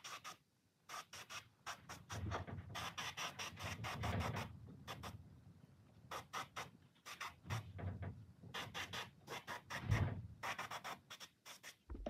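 Airbrush spraying paint in many short hissing bursts, with the trigger pressed and released again and again, mixed with a few soft handling knocks.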